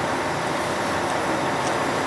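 Steady outdoor street background noise, even and unbroken, with no distinct events.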